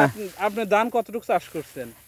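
A man speaking, in continuous conversational speech.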